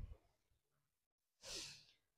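Near silence, then about a second and a half in, a single short breath, sigh-like, from a woman close to the microphone.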